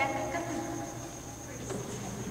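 Quiet room tone with a thin, steady high-pitched whine running through it.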